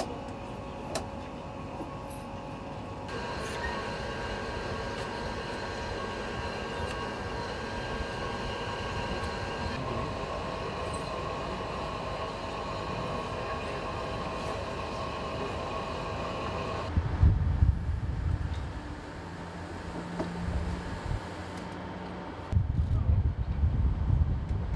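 Izmir Metro train running, with steady whining tones that step in pitch a couple of times. From about two-thirds of the way in, a loud low rumble takes over in bursts.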